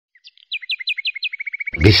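A bird singing: about five clear, falling whistled notes, then a fast, even trill.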